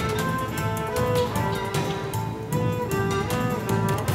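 Dramatic background score: bowed strings playing a slow melody of held notes over a repeating low pulse.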